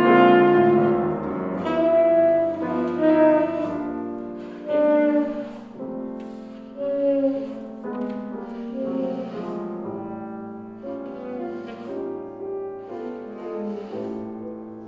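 Saxophone and grand piano playing together: the saxophone holds long melodic notes over piano accompaniment. The playing is loudest in the first few seconds, then softer, with brief swells about five and seven seconds in.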